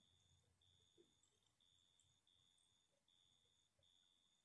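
Near silence: a pause in the talk.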